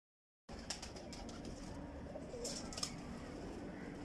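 Tippler pigeons faintly cooing, with a few sharp clicks, the loudest about three seconds in; the sound begins about half a second in.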